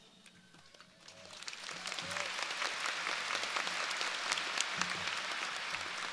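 A large audience applauding, the clapping starting about a second in and building quickly to a steady level.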